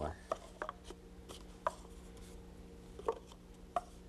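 Paper cups set down one by one on a table: about six light, sharp taps spread unevenly through a few seconds, over a steady low electrical hum.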